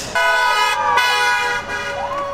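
A passing car's horn honking twice in quick succession: a steady held note, a short break, then a second, slightly longer honk.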